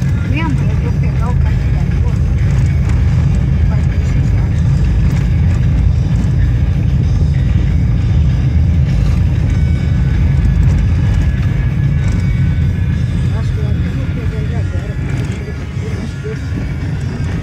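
Steady low rumble inside the cabin of a Renault Logan taxi driving over cobblestone streets: road and engine noise, with music playing under it.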